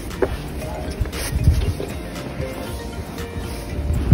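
Wind buffeting the microphone in a low rumble, with a few low thumps about a second and a half in, under faint background music.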